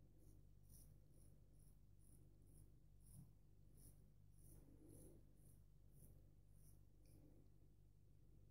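Faint, short scratches of a straight razor shearing stubble through shaving lather on the neck, about two strokes a second.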